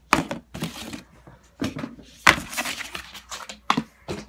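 Paper plates being handled and cleared off a wooden tabletop: a string of knocks, taps and short scrapes, the loudest knock a little over two seconds in.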